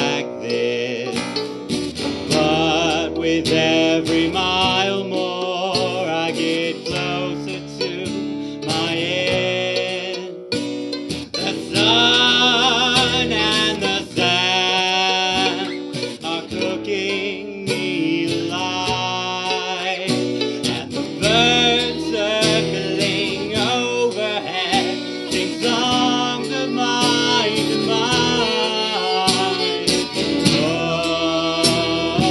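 A band playing a song live: a man singing lead over strummed acoustic guitar and fiddle.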